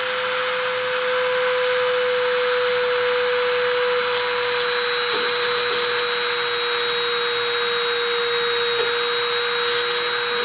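A Dremel rotary tool runs steadily at 30,000 RPM as a mini-mill spindle, giving a steady whine. Its collet spins a sterling silver wire pressed against an aluminium oxide ceramic plate as friction-surfacing deposition begins.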